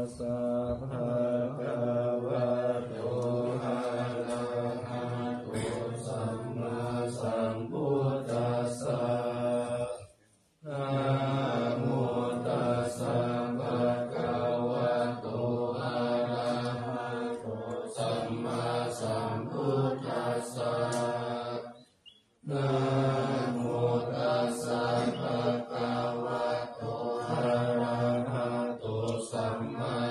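Buddhist morning chanting: low male voices chanting Pali in a steady, near-monotone recitation. It breaks off briefly twice, about ten and twenty-two seconds in, then carries on.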